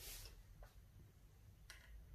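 Near silence: room tone with a low hum and a couple of faint, short clicks.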